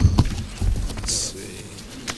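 Papers handled on a wooden dais close to a desk microphone: a few sharp knocks and low thumps in the first second, a brief rustle about a second in, and voices murmuring faintly in the room.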